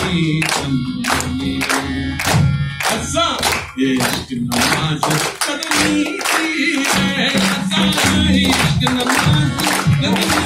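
Live Hindustani folk-style song: harmonium and tabla accompanying singing, with several people clapping along to the beat.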